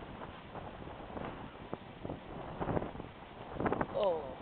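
Strong wind blowing across the microphone, a noisy rush that comes and goes in gusts, loudest near the end.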